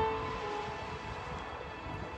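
Electronic keyboard playing a soft, sustained chord, its held notes fading out within the first second.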